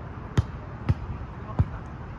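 Volleyball being played by hand in a pepper drill: three sharp slaps of hands and forearms on the ball, about half a second apart.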